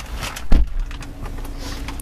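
A single loud, low thump about half a second in, followed by a faint steady hum.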